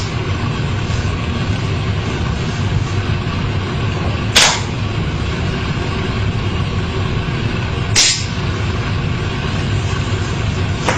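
Two short, sharp revolver sounds about three and a half seconds apart, near the middle and near the end, over a steady low rumbling background.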